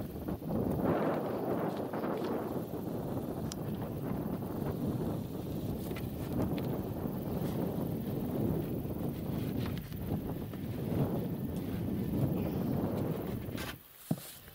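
Wind buffeting the microphone: a steady, uneven rumbling rush, with a few faint knocks.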